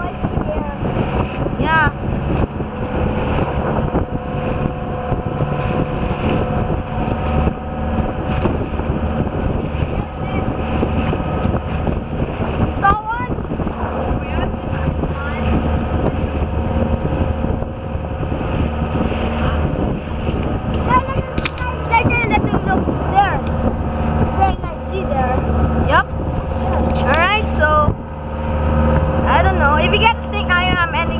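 Outrigger boat's engine running steadily under way, with wind and water noise.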